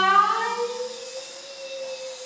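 Several voices of a choir holding long, overlapping sustained notes at different pitches, like a drone; one fuller note fades out about half a second in while another slowly slides upward.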